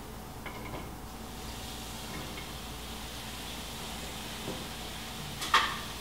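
Water being poured into a deep skillet of sliced ginger: a faint, steady pour from about a second and a half in, ending with a light click just before the end.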